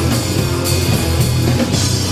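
Loud live rock band performing, with drum kit and guitars.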